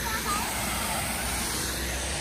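Steady rush of water from a large outdoor fountain with many spraying jets, splashing into its basin.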